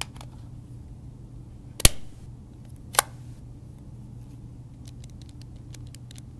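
Two sharp clicks, then from about two-thirds of the way in a quick run of light clicks of handheld calculator keys being pressed, over a steady low hum.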